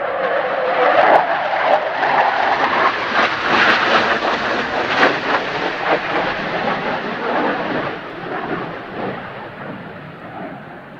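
Twin General Electric J79 turbojets of an F-4EJ Kai Phantom II passing overhead: a loud jet roar with sharp crackles that swells to its peak a few seconds in, then fades near the end as the jet flies away.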